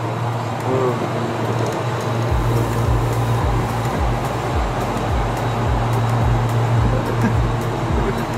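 Steady hum and rush of the refrigeration evaporator fans in a ship's cold store. About two seconds in, background music with a low beat about twice a second comes in under it.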